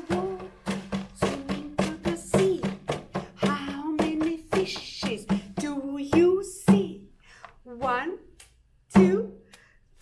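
Large barrel drum tapped with the palms at a steady beat under a woman's chanting voice, with a short pause and one loud strike near the end.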